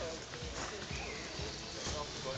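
Trials bicycle hopping on a boulder: a few dull thumps of the tyres landing on rock, with spectators' voices in the background.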